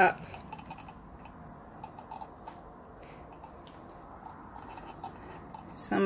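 Quiet room noise with a few faint, light clicks, like a plastic cup being handled while paint is slowly poured.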